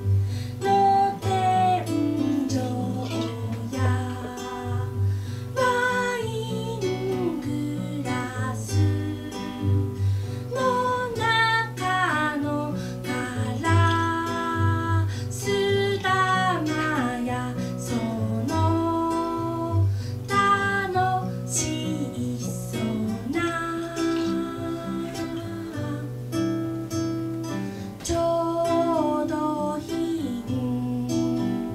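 A woman singing a song while accompanying herself on an acoustic guitar, the guitar keeping up a steady low bass line under her voice.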